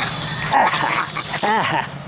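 Animal calls: a short bark about half a second in, then a higher cry that rises and falls at about a second and a half.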